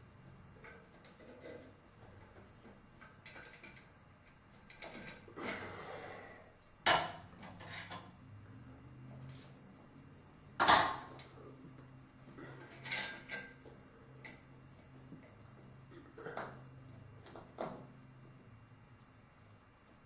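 Metal chandelier chain and fixture clinking: scattered sharp metallic clicks, a few louder than the rest, as a chain link is worked onto the ceiling mount by hand.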